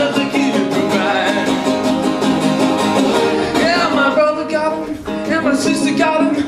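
Acoustic guitar strummed in a steady rhythm, with a man singing over it in a live solo performance.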